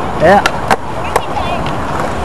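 Skateboard wheels rolling over a concrete skatepark slope: a steady rumble with a few sharp clicks.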